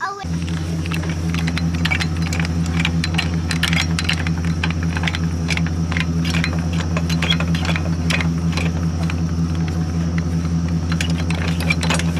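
Vehicle engine idling with a steady low hum, overlaid by many light metallic clinks and rattles from trailer hitch hardware and safety chain.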